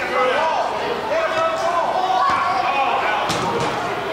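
Shouting voices of players and spectators echoing in a large indoor soccer arena, with a sharp knock of the soccer ball being struck a little over three seconds in.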